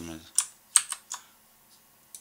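Three sharp clicks of computer keys, about a third of a second apart, the middle one the loudest.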